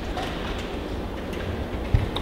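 Steady low rumble and hiss of indoor room noise, with one soft thump near the end.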